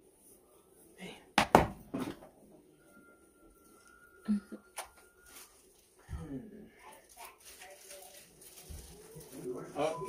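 A few sharp knocks and clicks, the loudest about a second and a half in, with a faint thin steady tone in the middle, then indistinct voices in the second half.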